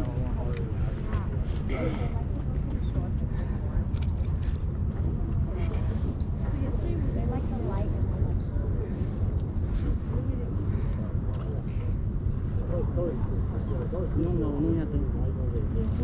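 Steady low wind rumble on the microphone, with faint voices talking in the background.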